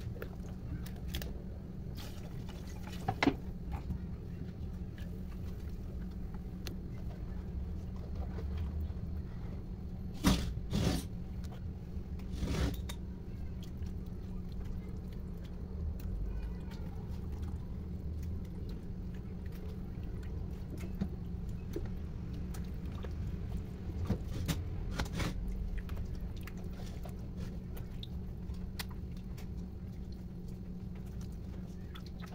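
Hands squishing and turning raw chicken thighs in a liquid marinade in a plastic basin, over a steady low hum. A few sharp knocks stand out, once early, three times near the middle and twice later on.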